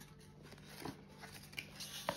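Paper lottery scratch cards handled and set down on a marble tabletop: faint rustling with a few soft ticks about a second in and near the end.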